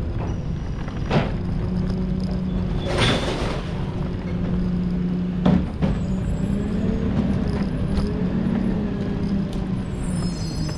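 Garbage truck's diesel engine running with a steady low hum, a hiss of air about three seconds in, and a few short knocks.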